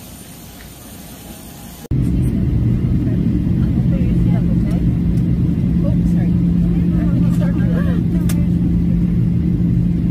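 Jet airliner cabin noise during landing: a loud, steady rumble of engines and rushing air with a low hum, starting abruptly about two seconds in after quieter airport apron sound.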